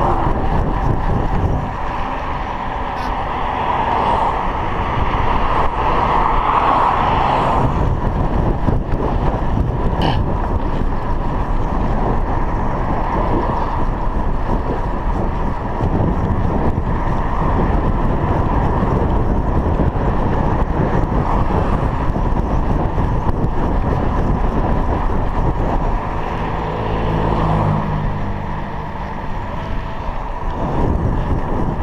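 Steady wind rush on the action camera's microphone while riding a bicycle along a road, mixed with tyre and road noise. Passing car traffic is heard, and a low pitched hum comes in briefly near the end.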